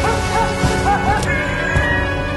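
A small dog yapping: a quick run of short, high yaps in the first second or so, over orchestral film music.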